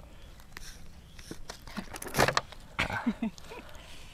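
Plastic water bottle handled and its screw cap twisted open, giving light clicks and crackles. About halfway through comes a short, loud vocal exclamation, followed by a few brief low voice sounds.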